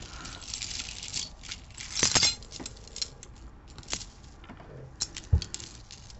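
Metal necklace chains jingling and clinking as they are handled, a string of small sharp clinks with the loudest cluster about two seconds in.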